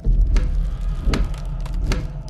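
A metronome ticking steadily, three ticks about three-quarters of a second apart, over a loud, deep low rumble.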